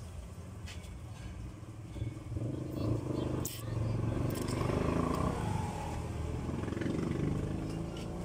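A motor vehicle engine running nearby, swelling from about two seconds in and easing off near the end, over a steady low rumble, with a few light clicks in the middle.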